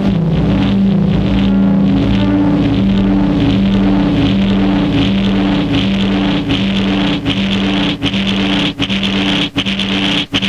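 Korg Volca FM synthesizer playing a low, droning sequence of repeating notes, run through a Korg Monotron Delay. From about six seconds in, short dropouts start chopping the sound, more often near the end.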